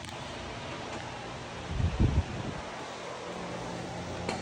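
Steady background hiss with a brief low rumble about halfway through.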